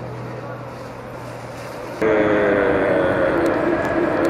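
Outdoor street background with a low hum, then about halfway through a much louder steady engine drone of nearby street traffic starts suddenly and keeps going, wavering slightly in pitch.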